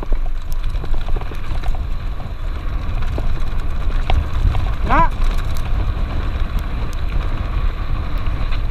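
Mountain bike rolling fast downhill on a gravel dirt road: a steady rumble of wind on the microphone and tyres on gravel, with the bike's frequent rattling clicks. A short shout rings out about five seconds in.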